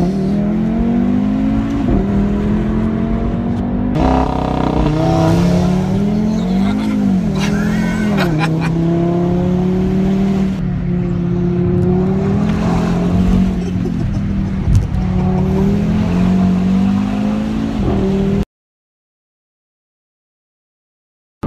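Audi RS3's turbocharged five-cylinder engine heard from inside the cabin under hard acceleration. Its pitch climbs through the revs and drops at each gearshift, across several short clips cut together. The sound stops dead a second or two before the end.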